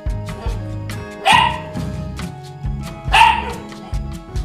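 Background music with a steady beat, over which a small dog, likely a puppy, barks sharply twice: once just over a second in and again about three seconds in.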